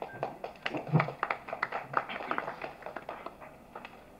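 Scattered hand clapping from a small audience, a quick irregular patter of claps that fades out over about three seconds.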